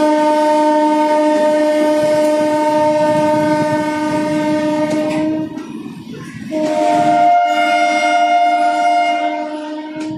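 Locomotive air horn sounding two long multi-note blasts: the first runs until about halfway through, and the second starts about a second later and holds to the end. Beneath the horn, passenger coaches rumble past on the track.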